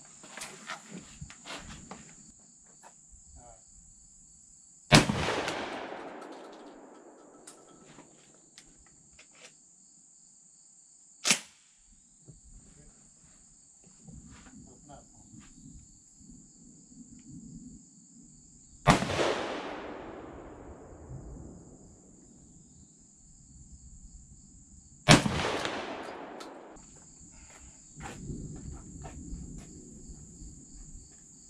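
Three slug shots from an AKSA S4 semi-automatic AK-style shotgun, about 5, 19 and 25 seconds in, each echoing away over two to three seconds. A single short, sharp clack comes about 11 seconds in, during a failure to feed that may be down to the Sterling Big Game slugs or to the gun's replaced lifter.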